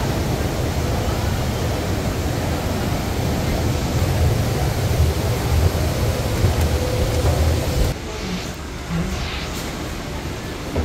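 Steady outdoor noise: a rough, uneven low rumble with a hiss over it, like wind buffeting the microphone, which drops abruptly about eight seconds in to a quieter hush.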